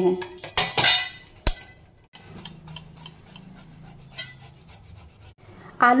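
Boiled potatoes being grated on a stainless-steel grater into a steel bowl: a soft, repeated rasping. A few sharp metallic knocks and clinks come in the first second and a half.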